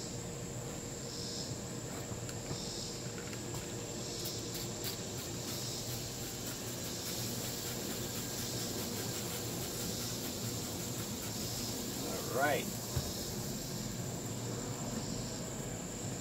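Insects chirping steadily in the background: a continuous high trill with softer chirps repeating about once a second. A short rising-and-falling call cuts in briefly near the end.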